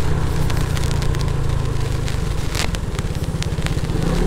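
SYM 150cc New Fighter scooter's single-cylinder engine running at low road speed: a steady low rumble with an even beat. A few light clicks are heard over it.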